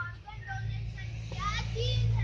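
Children's voices calling out in short phrases over a steady low rumble.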